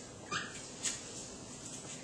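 Dry-erase marker squeaking on a whiteboard in two short strokes, one about a third of a second in and one just under a second in.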